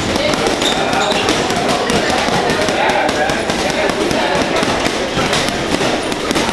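Boxing gloves punching a heavy bag: a run of repeated thuds, over the chatter of a busy gym.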